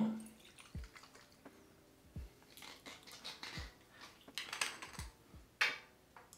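Faint handling of a glass aftershave bottle as its screw cap is taken off: a few soft knocks about every second and a half, and short scraping rustles in the second half.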